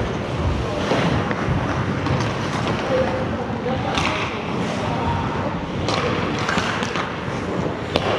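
Ice hockey play in a large indoor rink: a steady rush of skate blades scraping the ice, with scattered sharp clacks of sticks and puck, the loudest about four seconds in.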